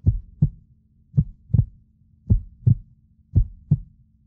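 Heartbeat sound effect of slow double thumps, lub-dub, four beats about a second apart. It is played as suspense while the contestants decide whether to press their buttons.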